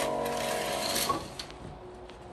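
A curtain is slid open along its rail: a rattling slide lasting about a second, with a few clicks.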